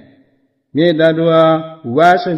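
A man's voice preaching a Sinhala Buddhist sermon in the drawn-out, chant-like intonation of traditional bana preaching. After a short pause it holds one long, steady-pitched syllable for about a second.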